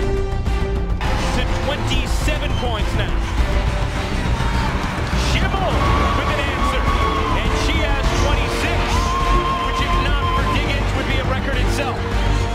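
Background music over basketball arena game sound: crowd noise with short high squeaks of sneakers on the hardwood court.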